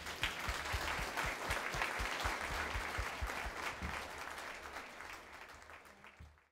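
Audience applauding at the end of a talk, steady at first and thinning out near the end before it cuts off.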